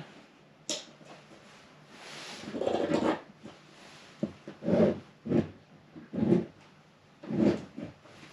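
A sharp click as the inverter is switched on. Then rustling and several short muffled knocks as a power cord's plug is handled and pushed into a plug-in watt meter on the inverter.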